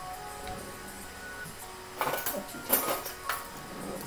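Soft background music with a few held notes, and a short cluster of clinks and knocks from kitchen utensils about halfway through.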